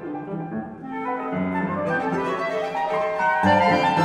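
Chamber quintet of flute, clarinet, violin, cello and piano playing contemporary classical music, with violin and cello lines to the fore and piano beneath. The ensemble grows louder over the second half.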